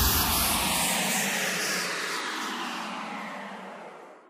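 A noise sweep closing a scouse house dance track: a whoosh of filtered noise falling in pitch and fading steadily away, with the bass dropping out within the first second.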